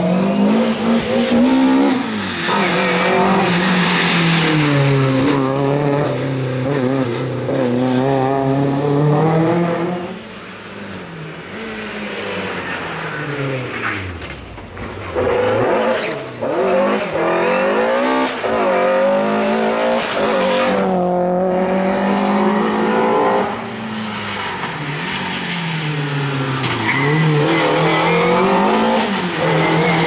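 BMW E30 M3's four-cylinder engine at racing revs, repeatedly climbing and falling in pitch as the car is driven hard through a slalom. It drops quieter and lower for a few seconds near the middle, then picks up loud again.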